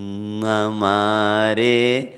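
A man's voice singing a Hindi devotional bhajan, drawing one syllable out into a long held note that changes pitch slightly a few times.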